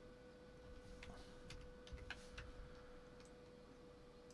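Near silence with a few faint clicks of a computer mouse, bunched between about one and two and a half seconds in, over a faint steady hum.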